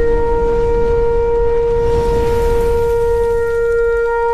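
A shofar sounding one long, steady held note over a low rumble.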